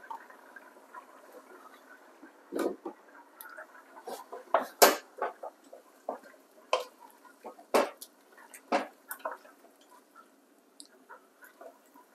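A wooden spoon stirring a pot of chunky vegetable stew, with irregular knocks and scrapes of the spoon against the metal pot among the wet vegetable pieces; the knocks come most thickly in the middle and thin out near the end.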